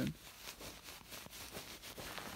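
Faint rustling of a goose-feather-filled duvet squeezed by hand, in a few soft bursts.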